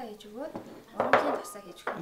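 A glazed ceramic bowl clinks as it is set down on a hard stone countertop, ringing briefly, followed by a short light knock near the end.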